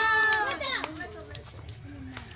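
Children's voices: one child's drawn-out high-pitched call is held over the first half second, then breaks into scattered short calls and chatter.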